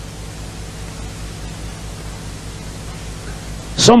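Steady hiss of the recording's background noise with a faint low hum; a man's voice starts again right at the end.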